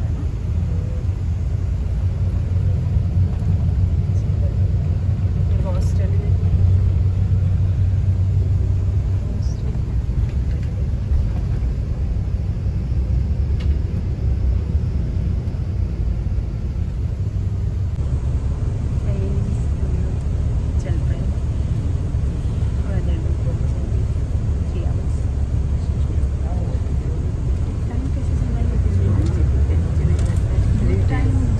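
Steady low rumble of a coach bus's engine and tyres on the road, heard from inside the passenger cabin, with quiet talking in the background.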